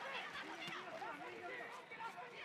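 Faint voices calling out over a low crowd murmur in a fight arena, with no blows or thuds standing out.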